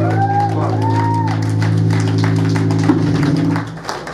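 A metal band's final chord ringing out through the amplifiers as a steady low drone with some gliding high squeals over it, cut off about three and a half seconds in. Scattered claps run underneath.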